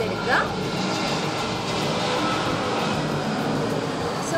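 A steady, even rushing noise that sets in about half a second in and holds at a constant level.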